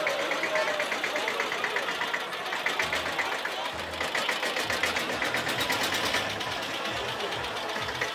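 Tractor engine running with an even, rapid clatter as it passes close by, with crowd voices underneath.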